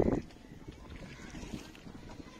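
Water and wind around a small wooden boat moving across open water. A louder rush of noise at the very start drops away almost at once, leaving a faint, steady wash.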